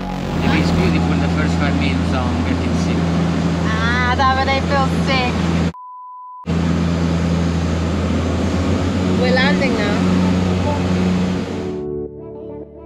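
A turboprop seaplane's engine and propeller, heard inside the cabin in flight as a loud, steady drone with a low hum. Voices come through briefly twice. About halfway through, the sound is replaced by a short single-pitch beep lasting under a second.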